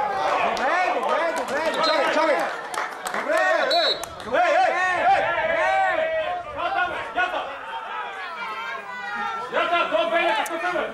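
Several men's voices shouting and talking over one another: spectators and players calling out at a football match.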